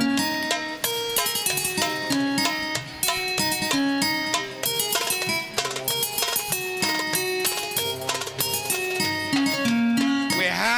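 Live Arabic ensemble music: a quick melody of short plucked-string notes over hand drums, playing on without a break.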